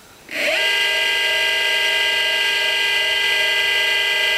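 Golden Motor BLT-650 electric motor spinning up from rest with no load on 15S (57 V) lipo packs: a whine that rises quickly in pitch about a quarter second in, then holds as a steady, loud, many-toned whine at its no-load speed of about 1,510 RPM.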